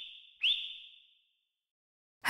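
Two high whistled calls, each a quick upward swoop into a held tone that fades away; the first is already trailing off and the second starts about half a second in. They are a sound effect for a mother sea otter whistling to call her pup.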